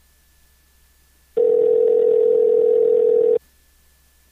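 Telephone ringback tone heard over the phone line: one steady two-second ring starting about a second and a half in, the signal that the called phone is ringing and has not been answered.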